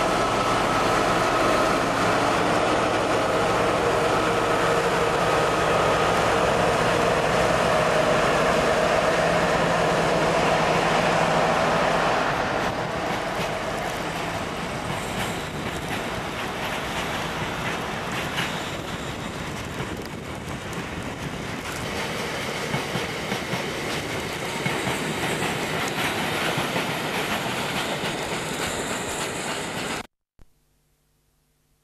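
British Rail Class 60 diesel locomotive 60059 passing close by under power, its eight-cylinder Mirrlees diesel engine working hard. About twelve seconds in the engine fades, and a long rake of tank wagons rolls past with a running clickety-clack of wheels over the rail joints.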